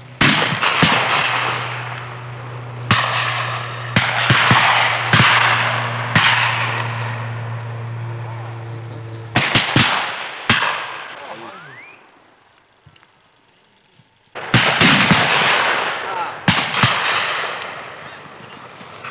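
Several hunters' shotguns firing at flying ducks in irregular volleys of sharp reports, each shot trailing off in a long rolling echo. The firing stops for about two seconds near the middle, then resumes in a final burst. A steady low hum runs under the first half.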